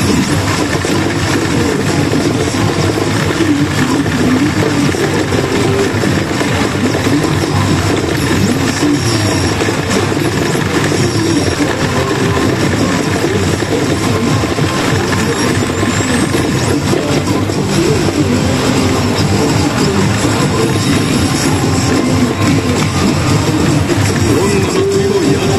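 Yajikita pachinko machine playing its loud, continuous rush-mode music and sound effects as the reels spin, over a dense, steady din.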